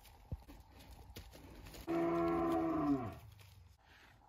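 A cow mooing once: a single call of about a second, steady in pitch and then dropping at the end, with faint rustling and light clicks around it.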